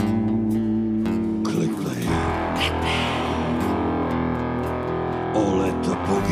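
A rock band playing an instrumental break between sung lines: electric guitar over acoustic guitar, bass and drums with cymbal hits. A held chord gives way to a new figure about a second in.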